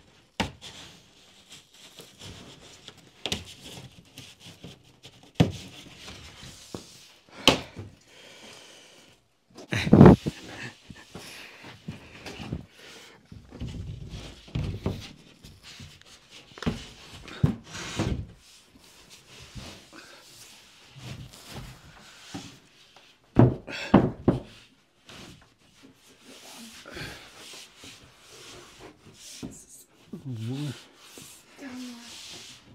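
A drywall sheet being handled and fitted against wall framing: scattered knocks, thumps and scraping, with the loudest thuds about a third of the way in and again about two-thirds through.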